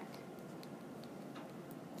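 Quiet room tone with a few faint ticks.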